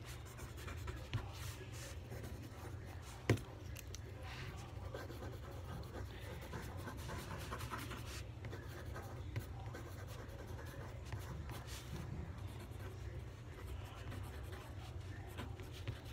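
Mechanical pencil writing on spiral-notebook paper: faint, irregular scratching strokes over a steady low hum, with a single sharp tap about three seconds in.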